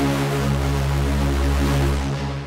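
Arturia MiniFreak V software synthesizer playing a detuned, distorted supersaw lead patch, one low note held and sustained, fading away at the end.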